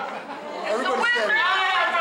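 A woman's voice through a handheld megaphone, with other people's voices chattering over and around it.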